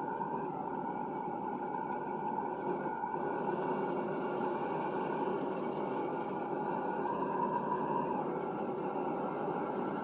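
Propane gas forge burners running with a steady, even rushing sound.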